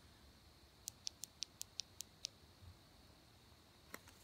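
Faint near-silence broken by a quick run of about seven small, sharp clicks over a second and a half, about five a second.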